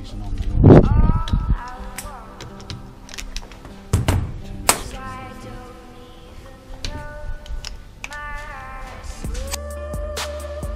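Background music with sustained pitched tones, a loud swell about a second in and a few sharp hits around four seconds in.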